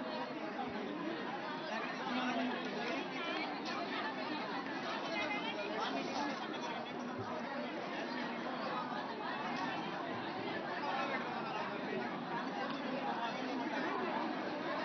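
Crowd chatter: many people talking over one another at once in a steady babble of voices.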